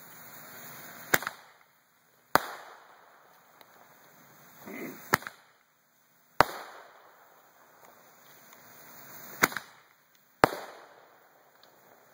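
Roman candles firing: six sharp pops, in pairs a little over a second apart and about every four seconds, each pair led by a building hiss and trailed by a fading one.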